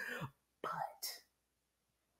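A woman's voice trailing off, with a soft, breathy "but" in the first second, then silence for the last second.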